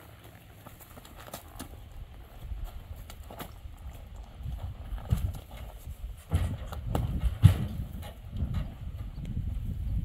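A horse's hooves clopping, then thudding and knocking hollowly on a stock trailer's floor as she is ridden up into it from about six seconds in. The loudest thump comes about seven and a half seconds in.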